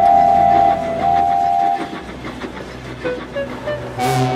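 Two blasts of a steam locomotive whistle, the first at the start and the second about a second in, each just under a second long. Background music plays beneath them and carries on after.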